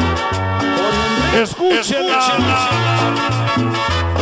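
Cumbia sonidera music with no singing. A little over a second in, the bass drops out and a swooping, sweeping effect runs through the music for about a second. Then the full band comes back in.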